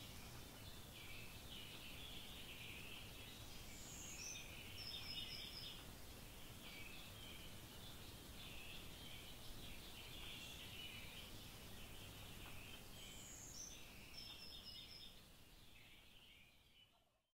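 Faint birdsong over low, steady outdoor background noise: many short chirps throughout, with a higher whistled phrase about four seconds in that comes again almost the same near the end.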